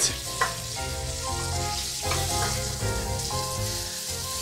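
Fatty wagyu beef pieces sizzling in a hot pan as the last of the broth boils off, with a metal spatula working the meat and a light click about half a second in. Soft background music with held notes plays underneath.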